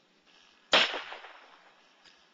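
A single gunshot about three-quarters of a second in, sharp at the start and dying away over about a second: the shot that carries out Connie Marble's execution.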